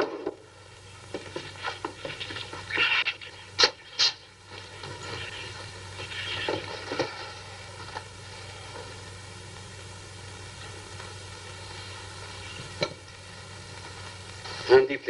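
Scattered scuffs and knocks of people moving about a room over the steady hiss and hum of an old film soundtrack, with two sharper knocks about three and a half and four seconds in and another near the end.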